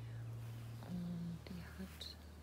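A woman's short hummed 'mm' about a second in, and a briefer one near the end, over a steady low hum.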